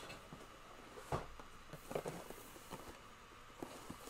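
Faint handling noises: a few soft knocks and scuffs as objects are put down and picked up, over quiet room tone.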